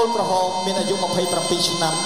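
Traditional Khmer boxing-ring music led by a reed oboe (sralai), mixed with a voice speaking over it.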